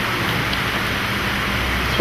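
Steady hiss with a faint low hum under it: the background noise of the hall recording, with no speech.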